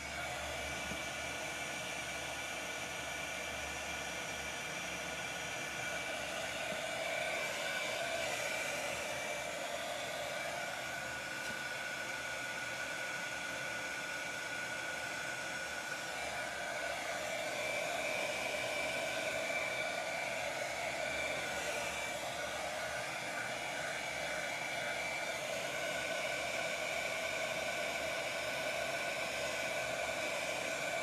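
A craft heat gun switched on and running steadily: a constant rush of blown air with a faint whine. It is drying crackle paint on a glass plate, and the heat makes the finish crack.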